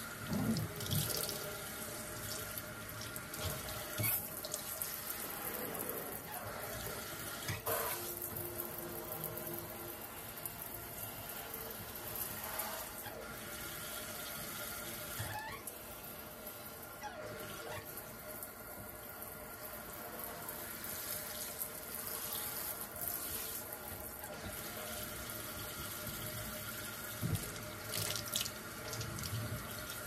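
Water running from a kitchen faucet into a stainless steel sink as it is rinsed, a steady splashing flow. Now and then there is a short knock or clack of the fixtures being handled.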